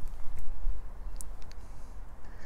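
Low, uneven rumble on the microphone, with a few faint clicks about a second in.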